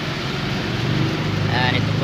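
Road traffic with the diesel engine of a cement mixer truck passing close by, a steady low rumble over tyre noise.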